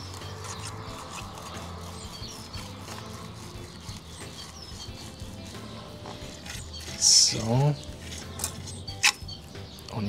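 Kitchen knife slicing and scraping along a glass cutting board as the skin is cut away from a pike fillet, with faint scattered clicks and scrapes over soft background music. A brief vocal sound is heard about seven seconds in.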